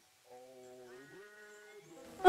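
A faint, drawn-out voice-like call held at a steady pitch, with a short break and upward shift about a second in.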